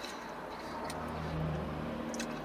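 Low rumble of road traffic passing outside, heard muffled from inside a car's cabin, swelling a little in the middle.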